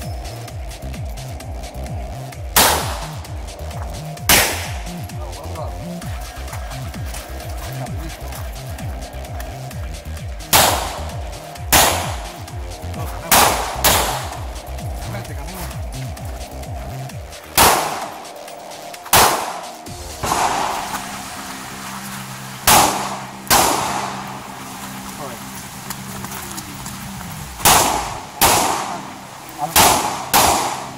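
Handgun shots fired singly and in quick pairs, about a dozen in all at irregular intervals, each a sharp crack with a short echoing tail, over background music.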